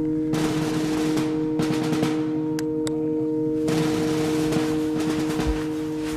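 A held, droning music bed of steady ringing tones, over a rustling hiss with scattered sharp clicks.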